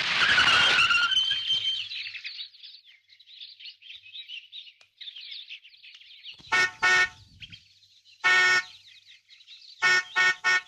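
A car horn honks: two short beeps followed by one longer blast. Before that, a loud rush of noise with a squeal dies away over the first two seconds.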